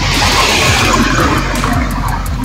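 A car passing close by: a steady whoosh of tyres and engine that holds through the two seconds.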